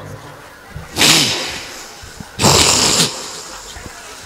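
A man weeping close to the microphone: two loud, sobbing, sniffling breaths about a second and a half apart, the second with a catch of voice.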